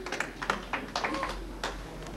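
Scattered hand claps from a small audience as applause dies away, a handful of claps that thin out and stop near the end.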